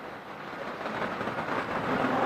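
Outdoor road traffic noise, a steady hiss and rumble that grows slowly louder.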